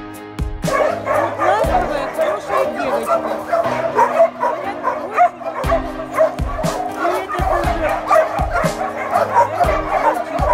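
Many dogs barking at once, a dense jumble of overlapping short calls that starts about a second in, over background music with a steady low beat.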